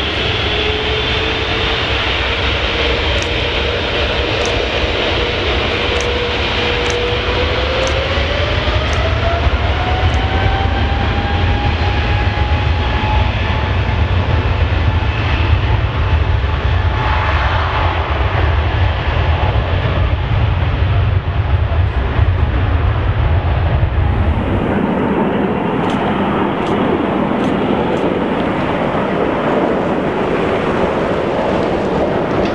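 Boeing 777-300ER's twin GE90 turbofans at high thrust on its takeoff roll: a heavy low rumble, with an engine tone rising in pitch as the engines spool up. Near the end it cuts to the lighter drone of an Airbus A380 on approach.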